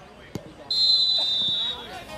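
Referee's whistle blown for the kick-off: one shrill blast of about a second, dropping slightly in pitch as it ends. A short dull thump comes just before it.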